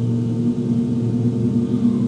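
A steady low hum with several pitched overtones, unchanging throughout.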